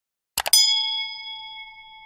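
Two quick clicks, then a bright bell ding that rings out and fades over about a second and a half: a subscribe-button and notification-bell sound effect.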